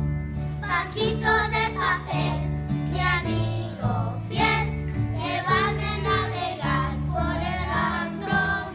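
Children's choir singing a song with piano accompaniment; the voices come in just under a second in.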